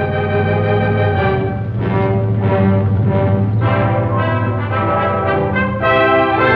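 Orchestral film-score music led by brass, with sustained chords over a held low note.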